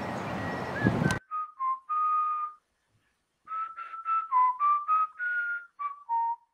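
Steady outdoor background hiss that cuts off abruptly about a second in, followed by a short whistled tune: a string of clear notes stepping up and down, with a pause of about a second in the middle.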